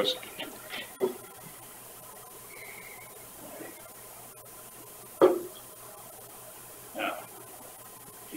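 Quiet room tone with a steady low hum, broken by a few short knocks or thumps. The loudest comes about five seconds in.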